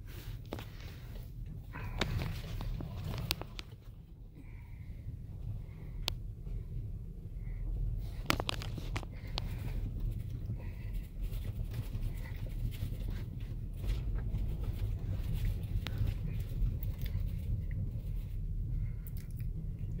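Inside a car's cabin while it is driven slowly: a steady low rumble of engine and tyres, with scattered sharp clicks.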